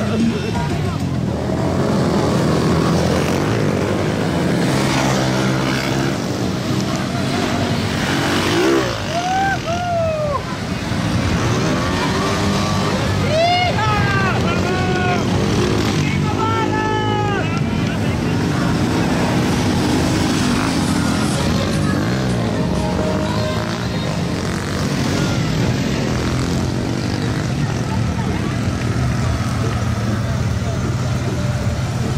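Engines of slowly passing vehicles, a pickup towing a float and an ATV, running steadily at low speed. People's voices mix in, with a few short rising-and-falling calls or whoops in the middle stretch.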